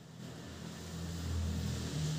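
Low engine rumble of a passing motor vehicle, swelling over about a second and a half, with a faint hiss above it.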